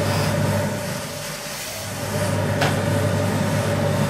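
Industrial steam iron blowing steam onto cloth: a steady hiss over a low machine hum, easing off for about a second and then coming back. A sharp click sounds about two and a half seconds in.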